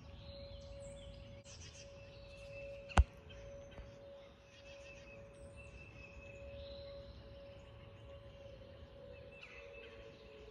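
Distant Whelen outdoor warning sirens holding one steady tone, then starting to wind down in pitch near the end as the test shuts off. Birds chirp throughout, and a single sharp click about three seconds in is the loudest sound.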